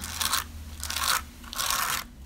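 Palette knife scraping glimmer paste across a plastic stencil in three short strokes, spreading the paste and rubbing off the excess.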